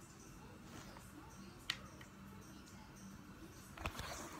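Faint room tone broken by one sharp click a little under two seconds in and a softer tick just after. Near the end come a few handling knocks as the phone camera is moved.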